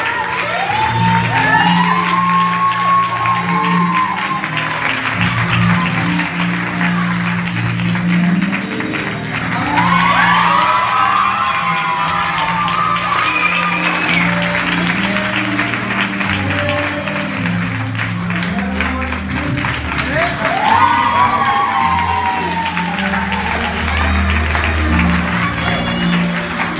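Sustained hand-clapping applause over a played music track with a steady bass line, with bursts of pitched voices rising out of it three times: about a second in, around ten seconds in and around twenty seconds in.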